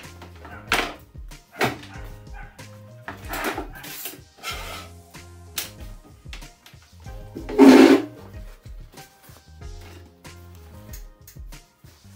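Background music with a steady bass beat, and a dog barking several short times over it. The loudest bark comes about two-thirds of the way through.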